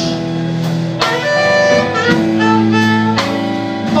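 Live blues band playing a slow ballad, an instrumental passage between sung lines: long held notes over chords that change about once a second.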